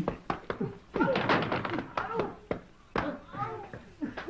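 Voices from an old film's soundtrack, broken by several sharp knocks or thuds.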